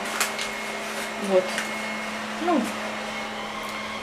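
Steady whirring of a running household electric motor: an even rushing noise over a constant low hum and a thin high whine, unchanged throughout.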